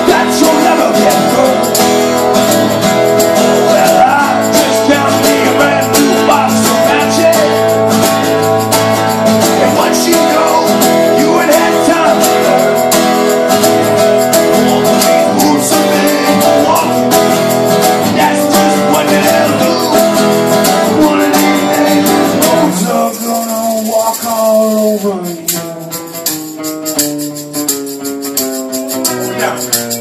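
A live acoustic band is playing: strummed acoustic guitars, a shaken tambourine and singing. About 23 seconds in, the full, bass-heavy sound drops away and the song closes more quietly, with notes sliding downward as they ring out.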